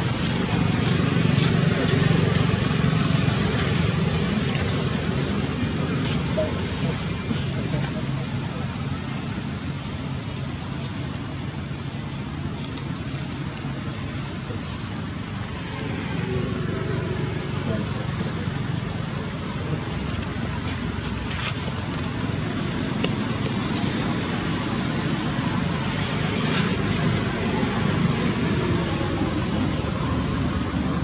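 Steady outdoor background noise of motor traffic, with an engine hum strongest in the first few seconds and indistinct voices in the background.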